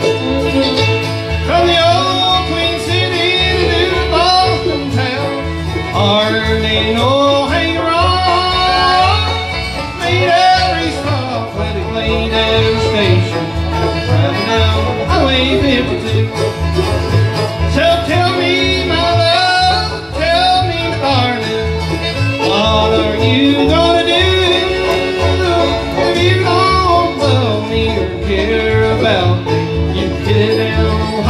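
Live bluegrass band playing, with banjo, acoustic guitars and upright bass.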